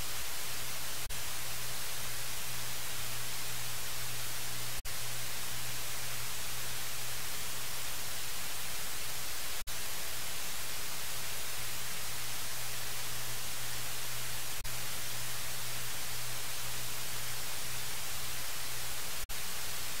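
Steady electronic hiss and static from the open audio feed of the livestream, with a low hum beneath. The sound cuts out for an instant about every five seconds.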